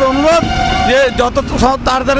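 A man talking, with street traffic noise behind.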